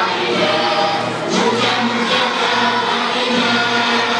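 A group of children singing together in chorus over music, the singing steady and loud.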